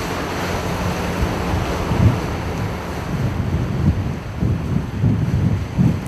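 Wind buffeting the microphone over the steady rush of water from a rigid inflatable boat running fast on a river.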